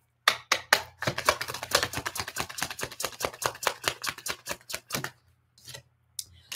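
A tarot deck being shuffled by hand: a fast run of card clicks and snaps, about nine a second, lasting about five seconds and stopping shortly before the end.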